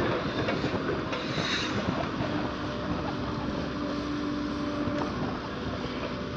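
Komatsu PC130 hydraulic excavator's diesel engine running steadily under load while the boom swings and lowers the bucket, with a faint steady hum over the rumble.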